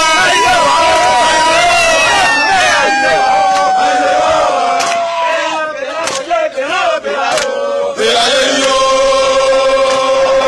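A group of men chanting together as they march, with voices holding long notes, one of them slowly falling in pitch. The chant breaks up briefly about six to eight seconds in, then resumes on a held note.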